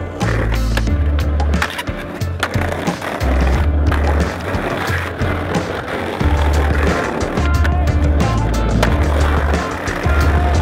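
Skateboard wheels rolling on paving stones, with several sharp clacks of the board popping and landing, under backing music with a deep, stepping bass line.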